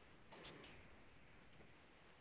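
Near silence: faint room tone with a few soft clicks, a cluster about half a second in and another single click about a second later.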